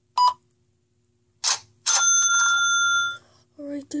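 Cash-register sound at the till: a short beep, then a ka-ching whose bell rings on for about a second before stopping.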